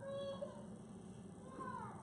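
Faint, brief voice-like sounds whose pitch rises and falls, once near the start and again near the end, over low room noise.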